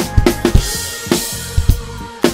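Acoustic drum kit played along with a pop backing track: bass drum and snare strokes, several a second, with cymbals ringing over the song.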